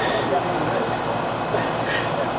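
Steady background noise with faint, distant voices talking.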